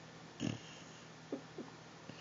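Basset hound snoring in its sleep: one loud snore about half a second in, then two short, fainter ones a little after the middle.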